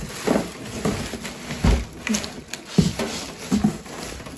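Microwave packaging being handled inside a cardboard box: plastic wrap and paper crinkling, and styrofoam and cardboard rubbing and knocking. There are two louder thumps, about two and three seconds in.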